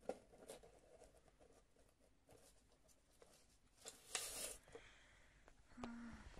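Faint handling sounds of a clear plastic tub and a sheet of paper: light clicks and taps, with a brief louder rustle about four seconds in.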